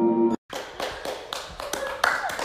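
A bit of mallet-percussion music cuts off, and after a short gap a person starts clapping their hands in a quick run of claps, about four a second.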